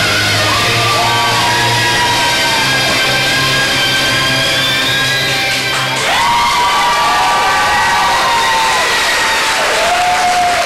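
Music playing through a hall's sound system, with audience whoops over it; about six seconds in the music ends and the crowd cheers and whoops.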